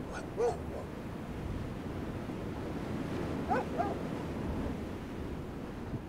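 A dog barking, two short barks near the start and two more a little past halfway, over a steady low rumble of wind.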